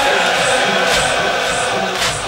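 Crowd of male mourners chanting a Persian noha in unison, with a steady beat of hands slapping chests (sineh-zani).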